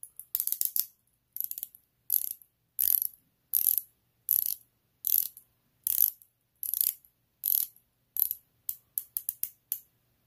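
Prometheus Poseidon's 120-click uni-directional dive bezel being turned by hand in short pushes: a sharp ratcheting click burst about every 0.7 s, the bursts coming quicker and shorter near the end.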